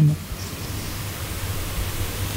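Steady hiss with a faint low hum: background noise of the microphone and room.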